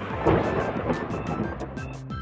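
Music with a thunder rumble and rain sound effect. The rumble swells about a quarter second in and fades away.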